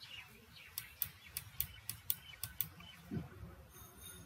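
A faint run of short, sharp ticks, about three or four a second for two and a half seconds, followed near the end by a brief thin high whistle.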